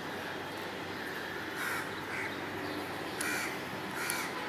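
A crow cawing three short times, about halfway through and near the end, over steady background noise.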